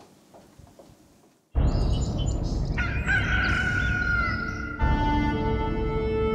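A rooster crows once, one long call, over a steady background noise that starts suddenly about a second and a half in after a quiet stretch. Sustained organ music comes in near the end.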